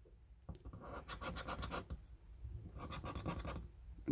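Scratching the latex coating off a lottery scratchcard in two quick bouts of rapid back-and-forth strokes, the second starting a little under three seconds in.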